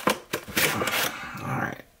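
Clear plastic blister packaging crinkling and scraping against cardboard as it is pulled out of a toy box. There are a few sharp clicks at first, then a denser stretch of rustling that stops abruptly near the end.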